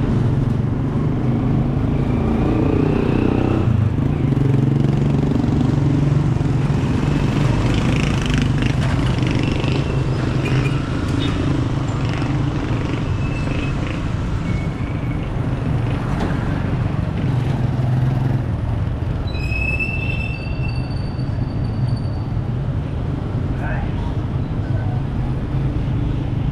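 City street traffic: a steady low engine rumble from vehicles, with indistinct voices of people in the background.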